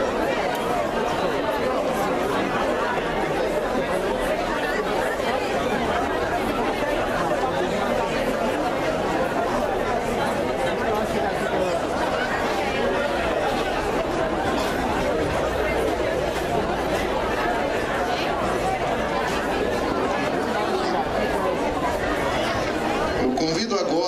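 Crowd chatter: many people talking at once, an even, unbroken murmur of overlapping voices.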